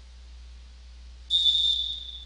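Volleyball referee's whistle blown once, a single loud high-pitched blast of under a second near the end, signalling the server to serve.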